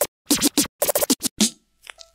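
Turntable scratching: a quick run of short scratch strokes with brief gaps, stopping about a second and a half in, then one faint last stroke near the end.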